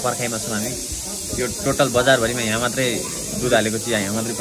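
Men talking in Nepali over a steady high hiss.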